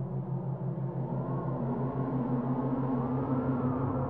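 Brainwave-entrainment tone track: a low tone pulsing rapidly and evenly (a 6 Hz beat) over a dense electronic drone. From about a second in, a fainter higher tone slowly rises and falls in pitch.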